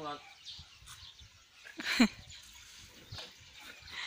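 Elephant giving one short, loud call that falls sharply in pitch, about two seconds in: begging to be fed ice. Faint clicks follow.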